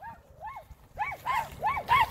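Small dogs, Shih Tzus, barking at a woodchuck in short, high yaps, about seven of them, coming faster in the second half.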